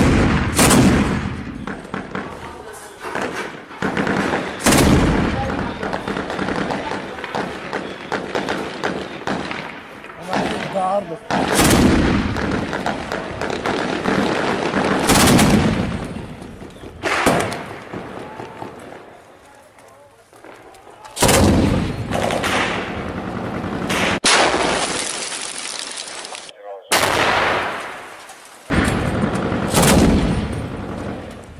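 Gunfire: loud single shots and short bursts of automatic fire at irregular intervals, each with an echoing tail.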